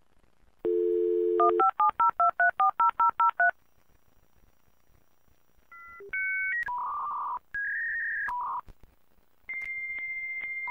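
Dial-up modem connecting over a phone line. A dial tone sounds for about a second, then a rapid string of touch-tone digits is dialed. After a short pause, from about six seconds in, the modem's handshake begins: a run of steady beeps and noisy screeching tones.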